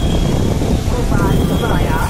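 Loud, steady rumble of road traffic, with wind buffeting the microphone as it moves. Voices come in about a second in, and a thin high whine cuts out and returns.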